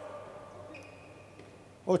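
Faint sports-hall ambience of a handball game in play, heard under the broadcast commentary during a pause, with a brief faint high tone near the middle. A man's commentary voice comes back near the end.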